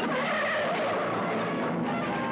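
A sudden loud rushing noise that starts abruptly and falls in pitch over about the first second, then eases off, with music underneath.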